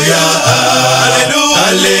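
A man singing a Congolese Catholic acclamation chant in held, sustained notes, over a steady low musical accompaniment.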